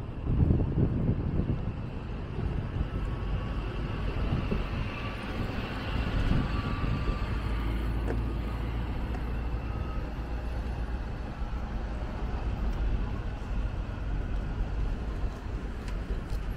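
Steady road traffic passing, a continuous low rumble of cars and buses with one vehicle going by louder about six seconds in.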